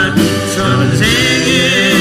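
Several voices singing a Korean praise song over steady sustained accompaniment, the sung notes wavering in pitch.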